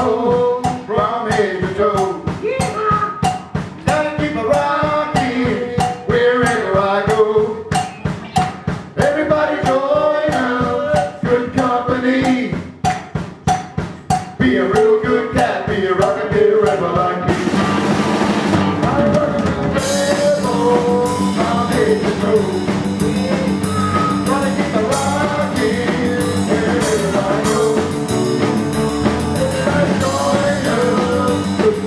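Live rock band playing a rockabilly-style song: electric guitars and a drum kit with singing, over a steady driving beat. About seventeen seconds in, a cymbal wash rings over the band for a couple of seconds.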